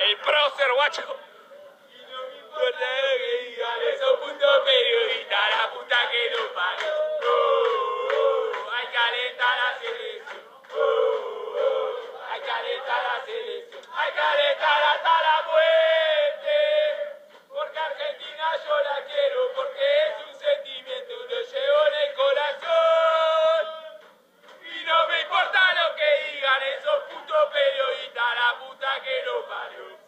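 A group of men loudly chanting and singing football songs together in celebration, with shouts, in several long stretches broken by short pauses.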